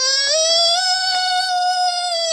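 A high-pitched voice holding one long note, its pitch rising a little at first and then held level.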